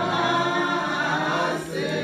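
A group of voices singing together in unison, with held, gliding notes; the singing dips briefly about a second and a half in, then carries on.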